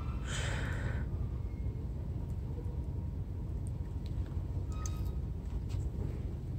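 A short breath out about half a second in, over a steady low background hum, with a few faint clicks near the end.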